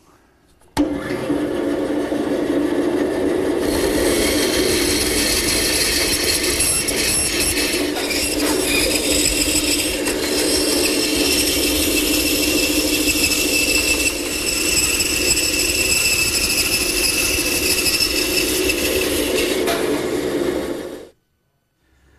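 Woodworking bandsaw starting up about a second in and running steadily while its blade cuts notches into a wooden board. It cuts off abruptly near the end.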